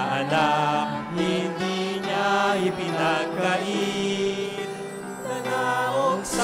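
A hymn in Filipino sung by a man into a microphone over instrumental accompaniment, with long held notes that glide between pitches.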